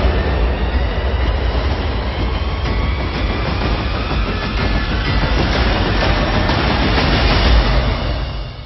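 Sound effect of a fire roaring: a dense rushing noise over a deep rumble, swelling to its loudest near the end.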